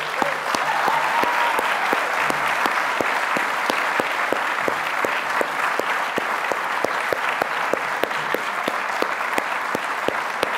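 A large audience in a tiered lecture theatre applauding. The clapping swells quickly at the start, then holds steady and dense.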